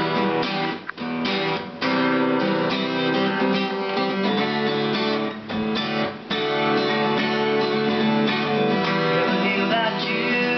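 Acoustic guitar strummed in a steady chord pattern, the chords ringing, with brief breaks in the strumming about a second in and again around five to six seconds.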